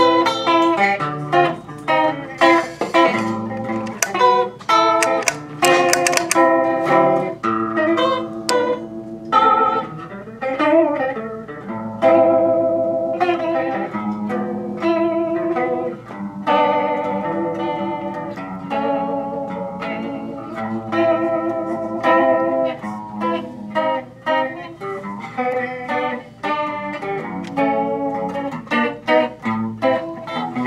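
Electric guitar played through a Fender Bubbler Chorus pedal: picked notes and chords with a wavering, shimmering chorus sound.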